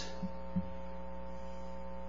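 Steady electrical mains hum, several fixed tones at once, with two faint low thumps in the first second.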